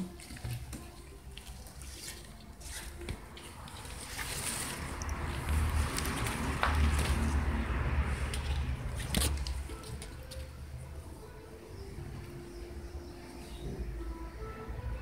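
Handling noise from a handheld camera moving close among potted orchid leaves: a low rumble that swells in the middle, with rustling and a few sharp clicks.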